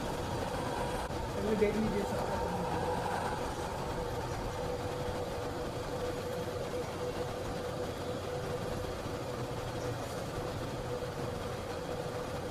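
Steady background hum with one constant tone running through it, under faint voices.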